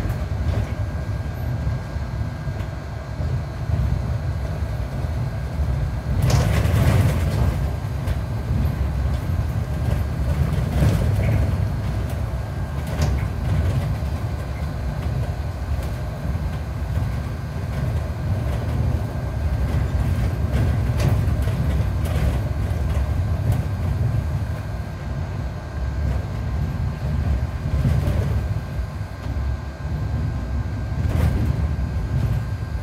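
Inside a Mercedes-Benz Citaro C2 G articulated bus on the move: steady low engine and road rumble, with a faint steady whine and scattered rattles and clatters from the body, the loudest about six seconds in.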